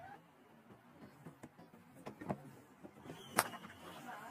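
Low stadium crowd background, then one sharp crack of a cricket bat striking the ball about three and a half seconds in.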